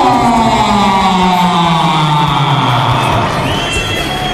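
A ring announcer's amplified voice drawing out a fighter's introduction in one long call that falls in pitch over about three seconds, with the crowd cheering underneath.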